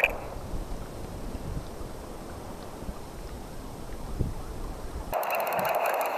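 Wind buffeting the microphone as a fluctuating low rumble over a steady hiss, which cuts off sharply about five seconds in.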